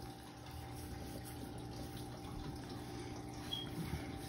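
A faint, steady low hum of room tone with a few faint held tones and no distinct event.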